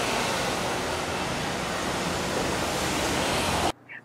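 Steady outdoor background noise, an even hiss with no distinct events, that cuts off abruptly near the end.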